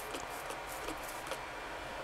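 Trigger spray bottle of Rapid Tac application fluid misting onto a glass sheet: a quick series of short, faint spritzes, several in a row, stopping about a second and a half in.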